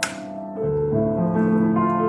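Solo grand piano played by hand: a chord is struck right at the start, a fuller, lower chord comes in about half a second later, and the notes ring on.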